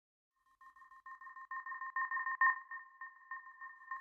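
Synthesized electronic intro tone: two steady high pitches pulsing on and off in an uneven stutter, swelling to a peak about halfway through and then fading.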